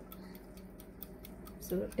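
Faint, even ticking of a wind-up kitchen timer over quiet room tone, with a low hum; a voice comes back in near the end.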